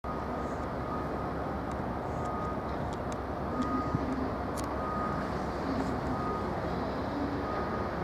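Steady rumble of a slow-moving train approaching over pointwork: a Class 67 diesel locomotive propelling coaches led by a Class 82 driving van trailer, with a few faint clicks partway through.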